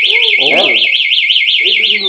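Electronic motorcycle alarm siren sounding: a loud, fast, high warble of about eight up-and-down sweeps a second.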